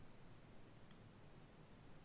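Near silence: faint room hiss, with a single faint click about a second in.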